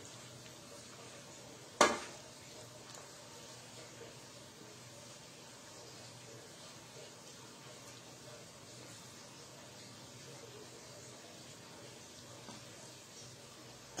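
Faint steady hiss with a single sharp click about two seconds in: metal serving tongs knocking against the dish as pasta is served.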